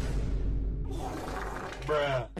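An abrupt, loud crash-like noise breaking in after silence, its rough noise running on, with a short voice sound swooping in pitch near the end.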